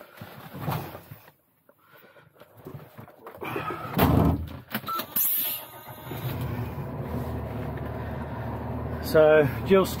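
Knocks and rustling in a truck cab as the driver gets into the seat, with a loud thud about four seconds in and a short hiss just after. About six seconds in the garbage truck's diesel engine comes on and idles with a steady low hum.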